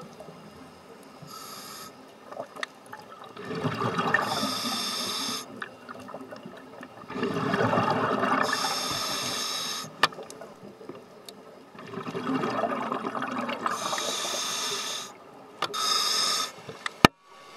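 Scuba diver breathing through a regulator underwater: long bursts of exhaled bubbles, each about two to three seconds, coming roughly every four to five seconds, with a fourth starting near the end.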